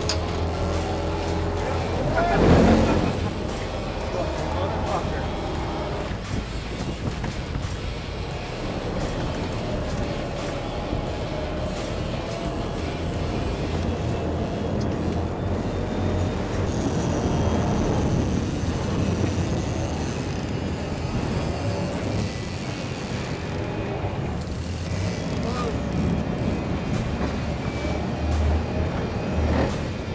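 Sportfishing boat's engines running steadily under wind and water noise, with a short shout about two and a half seconds in.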